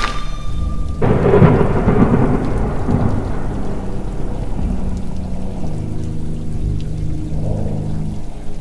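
Thunder sound effect with rain: a sudden crack of thunder about a second in that rumbles away over the next few seconds. A low steady hum comes in about halfway through.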